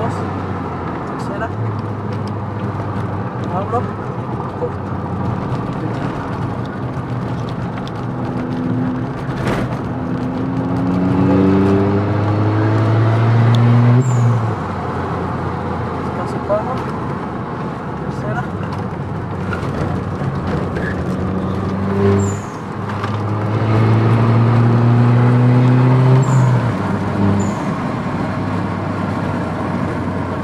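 SEAT León FR's engine heard from inside the cabin during hard track driving. The engine note climbs in pitch under full acceleration twice, each time dropping off suddenly as the driver lifts off or brakes.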